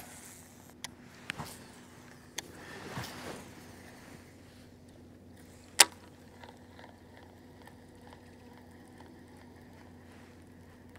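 Baitcasting rod and reel being cast and wound in: a few light clicks, a soft swish about three seconds in, and one sharp click near the middle. After that comes a faint, steady whir as the reel is cranked.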